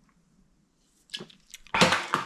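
A man drinking from a can: quiet at first, then a couple of soft gulps about a second in, and a loud breathy exhale near the end as he lowers the can.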